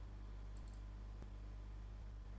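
Quiet room tone from a computer microphone: a steady low electrical hum under faint hiss, with a faint click about a second in.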